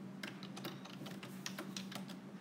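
Typing on a tablet's on-screen keyboard: a quick, irregular run of about a dozen light key clicks.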